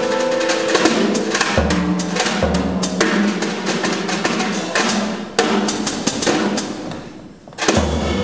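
Live jazz piano trio, with piano, upright bass and drum kit, playing with the drums to the fore in busy snare and cymbal strokes. The sound thins out and nearly stops shortly before the end, then the full band comes back in sharply.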